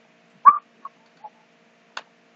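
Handling sounds as a fresh sheet of paper is set down for writing: one short squeak-like click about half a second in, two small ticks after it and a click near the end, over a faint steady hum.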